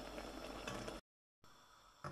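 Sliced mushrooms cooking in a pot, a steady faint sizzle with light scraping as a wooden spatula stirs them. It cuts off abruptly about a second in, leaving only faint room sound.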